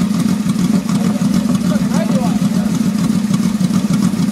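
Yamaha XVZ1300 Royal Star Venture's V4 engine idling steadily through aftermarket slip-on exhaust mufflers, with a brief voice about two seconds in.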